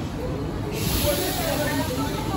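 A sudden steady hiss of released air from the MI79 RER train starts about three-quarters of a second in and keeps on as the train's doors close.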